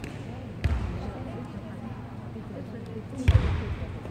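Two heavy thumps about two and a half seconds apart, echoing in a large sports hall, over a steady murmur of voices.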